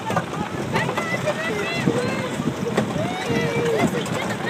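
Young children's voices chattering and squealing over steady wind noise on the microphone and the rumble of a moving cow train ride.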